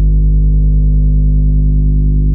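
Loud, deep synthesized tone of a logo sting, a single low note with overtones held steady.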